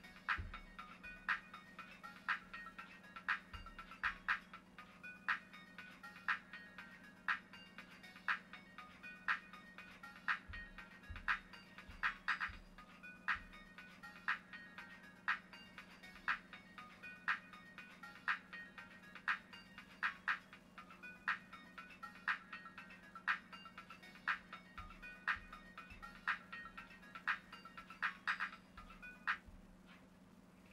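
Music playing quietly through an iPod touch's small built-in speaker, with a steady beat of about one hit a second. It cuts off just before the end as the sleep timer runs out and stops playback.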